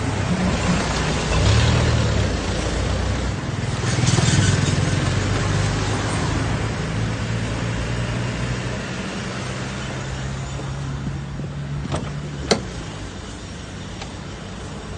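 Motor vehicle engine running steadily under constant wind and road noise, heard from a moving vehicle, with two louder swells early on. Near the end come two sharp cracks about half a second apart, the second louder.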